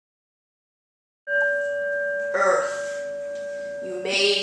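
A bell struck once about a second in, after dead silence, ringing on with a clear steady tone; it cues the start of the next guiding image in the practice.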